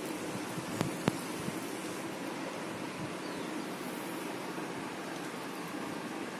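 Steady background hiss of room noise, with two short sharp clicks close together about a second in.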